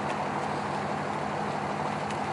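Steady low hum of an idling engine.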